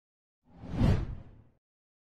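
A single whoosh sound effect for an animated logo transition, with a heavy low end. It swells in about half a second in, peaks quickly and fades out over about a second.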